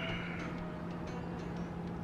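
Steady background noise with a constant low hum, without any distinct event.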